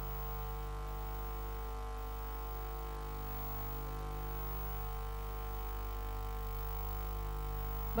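A steady, unchanging mains hum and buzz from a PA sound system: a stack of constant tones with nothing else happening.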